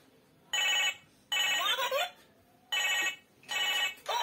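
An electronic children's toy gives out short ringtone-like electronic beeps: four bursts of about half a second each, the second one longer with sliding pitches.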